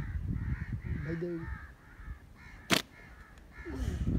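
Crows cawing repeatedly in the background, with a single sharp snap a little past the middle.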